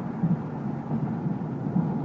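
Steady road and engine noise from a car driving at highway speed, heard inside the cabin as an even low rumble.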